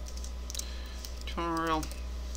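Computer keyboard keys clicking as a short word is typed, several quick keystrokes. About one and a half seconds in comes a brief single held vocal note from a man's voice.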